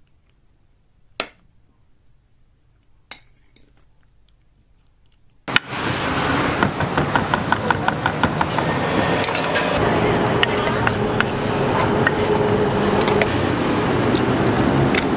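A metal spoon clinks twice against a glass bowl while stirring sliced banana with egg. About five seconds in the sound changes suddenly to a loud, busy street-food stall: a fast run of knife strokes on a wooden board, metal clinks and a steady background hum.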